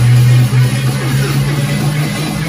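Music played loud through a karaoke speaker system with a pair of Weeworld S1500 40 cm subwoofers, with strong, held bass notes.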